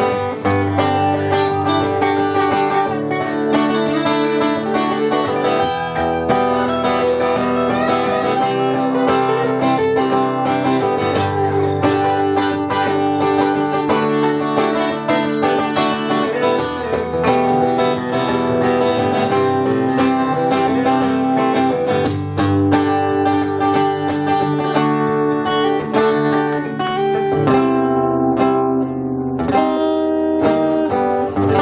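Acoustic guitar strummed steadily without singing, moving to a new chord every five or six seconds.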